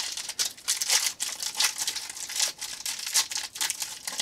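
Foil wrapper of a trading card pack crinkling in quick, irregular rustles as it is pulled open and the stack of cards is slid out.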